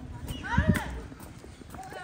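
Footsteps of sneakers on a paved tile path, with a couple of thuds in the first second.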